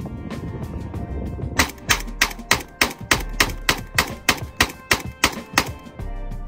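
Semi-automatic Zastava ZPAP M70 AK rifle in 7.62x39 firing a rapid string of about fifteen shots, three or four a second, from a 75-round drum magazine, starting about a second and a half in.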